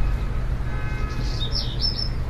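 A bird chirping, with a few quick high calls in the second half, over a steady low rumble.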